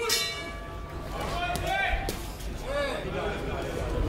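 A round bell struck once to start round one, its steady ringing fading away within about a second. Men's shouts follow.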